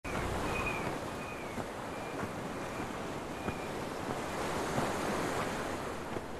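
Sea surf washing onto a sandy beach, with wind. A few faint, short high calls sound above it.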